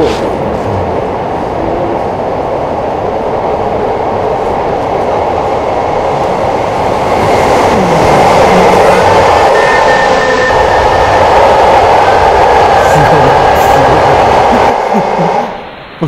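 Rumbling of a train in an underground railway tunnel, growing louder about seven seconds in, with a faint high whine. It cuts off suddenly near the end. The train sound is one that the viewers call unexplained, since it came at midnight.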